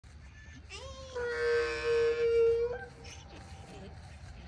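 A donkey's little bitty bray: one long, high, held call of about two seconds that slides up at the start and ends on a brief higher note.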